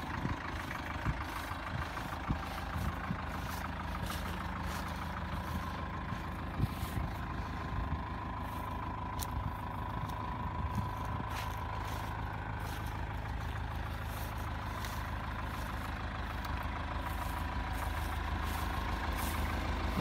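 Land Rover Series 3's 2.25-litre three-main-bearing four-cylinder diesel idling steadily, a low even rumble that grows a little louder near the end, with a few small clicks over it.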